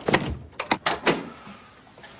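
A door shutting with a heavy thud, followed by a quick run of sharp knocks and clicks, then quiet.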